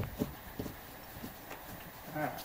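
Horse's hooves stepping on the stall floor: a few short, irregular knocks, most of them in the first second.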